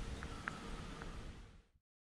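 Faint background ambience: an irregular low rumble with a few light ticks, fading out to silence near the end.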